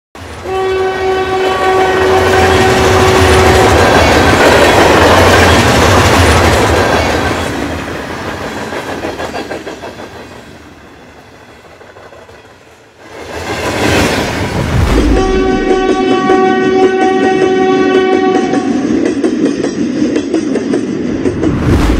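Train sound effects: a train horn blows one long steady note, then the rumble and clatter of the train builds, passes and fades away. A rushing whoosh follows, and the horn blows a second long note over the renewed running sound near the end.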